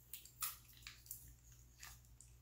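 A few short, faint scratches as fingernails pick at a sticker on the cap of a glass pill bottle, over a low steady hum.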